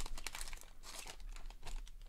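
Foil trading-card pack wrapper being torn open and crinkled by hand: a quick run of crackles that thins out toward the end.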